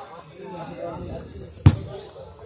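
Players' voices calling on the pitch, then one sharp thud about one and a half seconds in as a football is struck.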